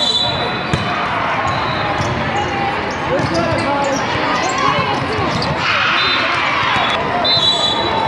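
Busy indoor volleyball hall: a steady din of many overlapping voices and shouts, with scattered sharp ball hits and bounces. A couple of short high-pitched tones cut through, one at the start and one near the end.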